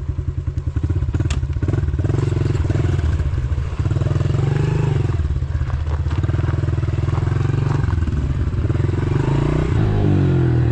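Small single-cylinder four-stroke engine of a Honda pit bike running, its separate firing pulses at first giving way to higher, steadier revs about a second in, with the pitch rising and falling as the bike rides off along a gravel road.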